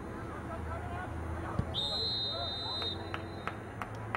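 Referee's whistle blown once, a single steady high blast of a little over a second, followed by a few sharp knocks.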